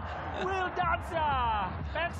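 A male television football commentator's voice in two short utterances, the second sliding down in pitch.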